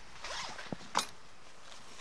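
Zipper of an equipment bag pulled open in a short rasping stroke, followed by a couple of sharp clicks from handling the bag about a second in.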